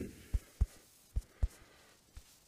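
Soft, low thumps in two pairs: two about a third of a second in, about a quarter second apart, and two more just past a second in.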